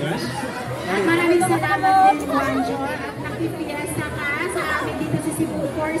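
Speech only: voices talking, with the chatter of a crowd around them.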